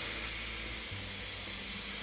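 Pneumatic wire soap cutter pushing its wire harp down through a loaf of goat milk soap: a steady hiss of compressed air over a low hum.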